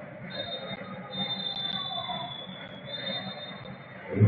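Referee's whistle blown in three long blasts, the last one held, over a low crowd murmur: the signal that ends the first half.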